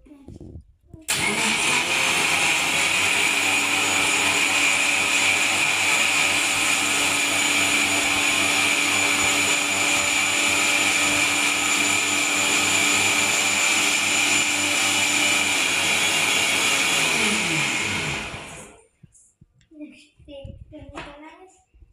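Black+Decker mixer grinder with a stainless steel jar blending banana and milk into a milkshake. The motor switches on about a second in, runs steadily at high speed, then is switched off and winds down with falling pitch near the end.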